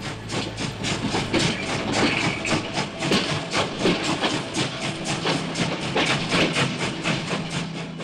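Sound effect of a train running fast: a rapid, even clatter of wheels on the rails, several beats a second.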